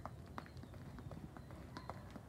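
Quick, faint sneaker footfalls on a concrete sidewalk: a person running a ladder drill with both feet landing in each square, an uneven patter of several steps a second.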